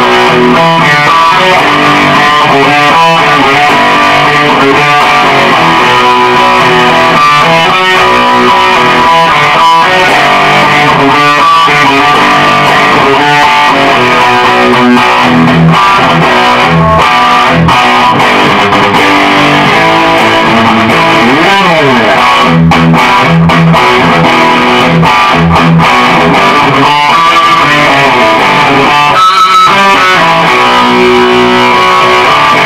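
G&L Custom Shop electric guitar played with distortion through an amplifier, mixing chords and riffs. About 21 seconds in there is a pitch slide, followed by a run of short, repeated low chords.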